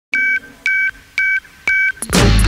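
Four electronic beeps, each two steady tones sounded together like telephone keypad tones, about two a second.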